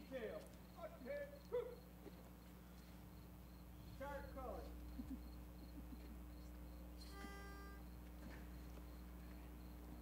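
Quiet outdoor ambience with a low steady hum. Faint voices murmur in the first two seconds and again about four seconds in, and a short steady pitched tone sounds about seven seconds in.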